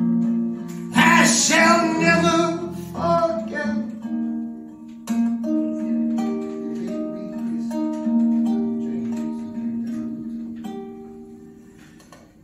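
Live acoustic guitar, picked notes ringing out one after another and slowly fading toward the end, with a sung phrase over the guitar in the first few seconds.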